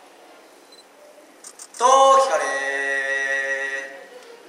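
Only speech: after a quiet pause, a man declaims in the drawn-out, chanted style of a Japanese cheer-squad kōjō, stretching his last syllable into one long steady note.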